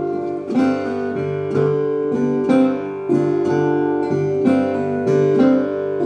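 Acoustic blues guitar strummed in a steady rhythm, about two strums a second.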